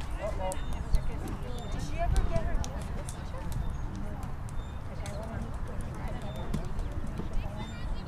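Distant, indistinct voices of players and spectators around an outdoor soccer field, too far off to make out words, over a constant low rumble.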